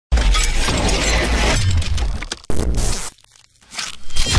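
Intro sound effects of shattering, breaking glass over a deep bass hit, then a second sudden crash about two and a half seconds in that dies away, and a sound swelling up near the end.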